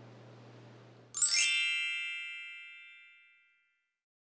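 A chime sound effect: a quick upward glittering sweep about a second in, then bell-like ringing tones that fade out over about two seconds.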